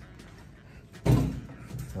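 A single loud bang about a second in, a basketball dunked on a low children's hoop, dying away over about half a second.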